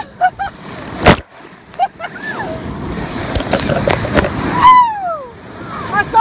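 A person's shrill, high-pitched laughter in short bursts, with a long falling whoop about five seconds in, over breaking surf splashing and rushing across the camera as a wave knocks it over. A sharp whoosh of water hits about a second in.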